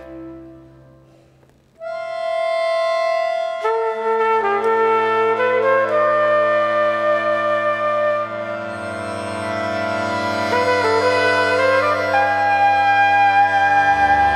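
Trumpet and accordion duo playing live. The music dies down almost to silence, then a long held note enters about two seconds in. More held notes and low bass notes join about four seconds in, and a higher melody moves over the sustained chords near the end.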